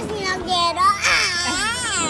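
A young child's voice: drawn-out, high-pitched vocalising without clear words that rises and falls in pitch and sounds close to crying.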